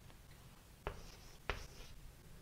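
Writing by hand on a board: two short taps of the writing tool, a little under a second in and again halfway through, with faint scratching after the second tap.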